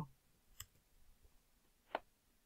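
Near silence broken by two short clicks, a faint one about half a second in and a louder one near the end, from someone working a computer.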